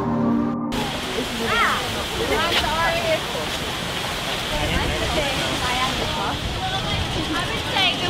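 Steady rush of fountain water jets under the chatter of a crowd of pedestrians walking and talking.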